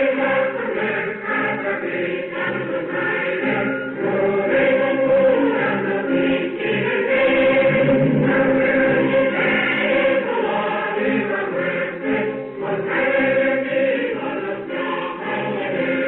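Music with a choir of many voices singing together, continuing without a break.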